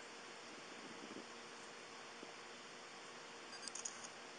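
Faint, steady background hiss of an outdoor phone-camera recording, with a few light clicks near the end.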